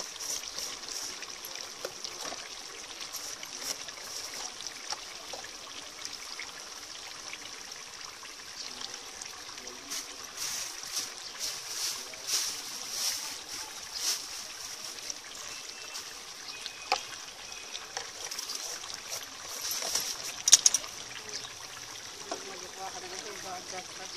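Meat cooking in a large aluminium karahi pot on a gas stove: a steady sizzling, bubbling hiss with crackles, busier about halfway through. There is one sharp click near the end.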